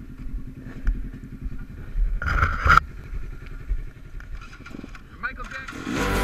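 An off-road vehicle's engine idling nearby with a low, even rumble. A person's voice is heard briefly about two seconds in.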